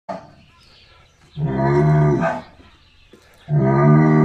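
Bull bellowing twice: two long, low, steady calls about a second each, the second beginning near the end.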